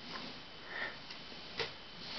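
Low room noise with a soft breath about half a second to a second in, and a faint single click about one and a half seconds in.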